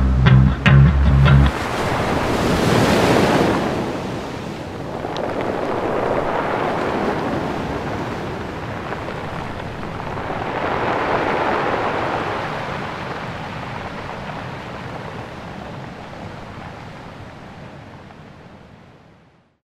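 Music cuts off about a second and a half in, leaving the sound of rough sea waves: a rushing surf noise that swells and ebbs three times, then slowly fades out.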